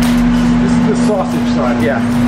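A steady low mechanical hum, like an engine running on the site, holds one even pitch throughout. Voices come in over it from about a second in.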